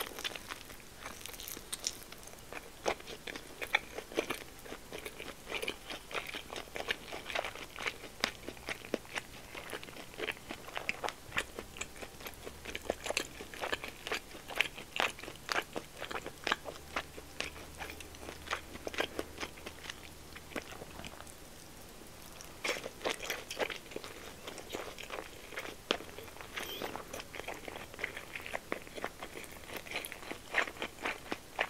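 Close-miked chewing of a pork-belly-wrapped rice ball (nikumaki onigiri): a dense run of short mouth clicks and smacks as the mouthful is worked, with a brief lull about two-thirds of the way through.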